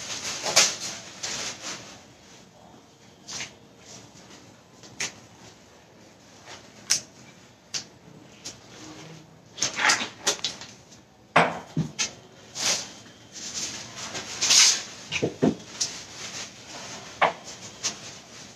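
Scattered, irregular knocks and clatter of kitchen utensils being handled on a chopping block and steel counter, with the loudest ones about ten and fourteen seconds in.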